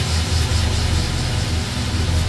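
A loud, steady, low rumbling drone with a dense hiss over it.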